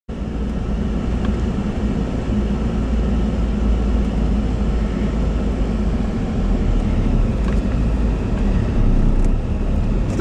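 Steady low rumble of a car being driven, its engine and road noise heard from inside the cabin.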